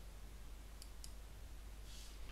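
Two faint, short computer-mouse clicks about a quarter second apart, the click that advances a presentation slide, over faint room hiss and a low steady hum.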